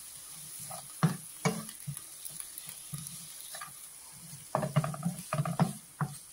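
Wooden spatula stirring and scraping sliced onions and tomato around a non-stick frying pan, over a steady sizzle of frying in oil. There are scattered strokes, with a quick run of scrapes about two-thirds of the way in.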